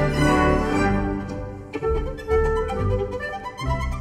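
Solo violin playing with a chamber orchestra accompanying it in sustained chords. The ensemble thins briefly about halfway through before the notes resume.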